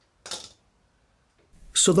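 A short metallic clink of pliers handled against the metal bike stand, about a quarter of a second in.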